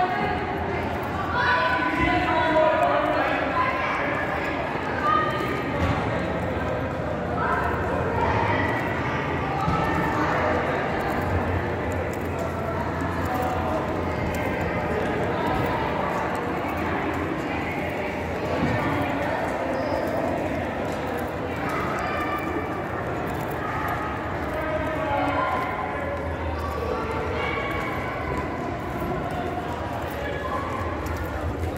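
Indistinct voices echoing through a large concrete concourse, with footsteps on the hard floor.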